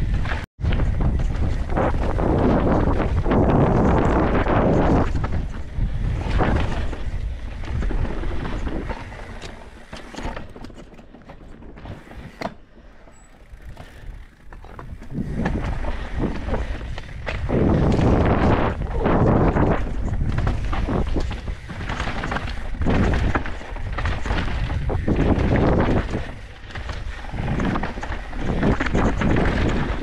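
Wind buffeting a helmet-mounted action camera's microphone over the rumble and rattle of a mountain bike's tyres on a dirt and rock downhill trail, rising and falling with speed. It eases off to a quieter stretch about a third of the way in, then builds again, with a momentary cut-out just after the start.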